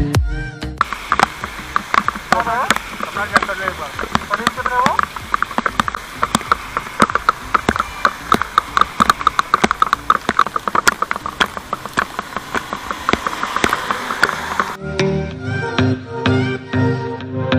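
Heavy rain, with many irregular sharp ticks of drops striking close to the microphone over a steady hiss of rainfall. Background music returns near the end.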